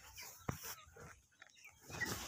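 Faint, scattered animal calls, with one sharp knock about a quarter of the way in.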